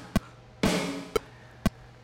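A metronome click ticks about twice a second, at 120 beats per minute. A little over half a second in, a single sampled snare drum hit sounds, and its tail fades over about half a second.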